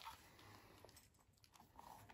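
Near silence, with faint rustling and small handling noises.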